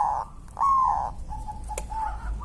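Caged zebra dove (perkutut) singing: short coo notes that fall slightly in pitch in the first second, then a fainter held note.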